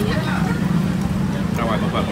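Steady street traffic noise, a continuous low engine hum from passing vehicles, with a person's voice briefly near the end.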